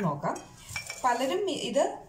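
Small glass bowls clinking and knocking against each other and the countertop as they are moved about, with a woman talking over it.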